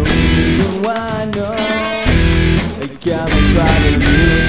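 Rock music led by electric guitar, with full chords over a heavy low end and a bending lead line in the middle.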